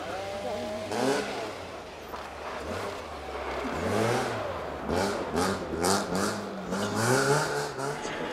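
BMW E30 rally car's engine revving hard on snow, the revs rising and falling five or six times as the driver works the throttle through a slide. A few sharp cracks in the second half.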